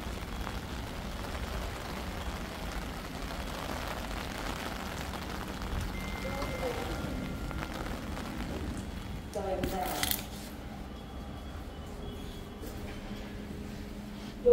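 Steady rain ambience while waiting at a passenger lift, with a short beep about six seconds in and a brief voice-like sound with a click around ten seconds. After that the rain is quieter, muffled once inside the lift car.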